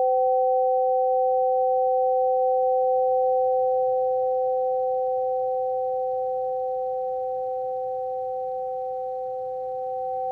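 Two tuned metal tubes of a Pythagorean tone generator ringing together a perfect fifth apart, a pure sustained two-note chord. It holds steady, then slowly fades over the second half.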